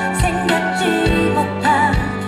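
Live pop ballad played through a concert sound system: a singing voice with vibrato over a band of bass, keyboards and a steady drum beat.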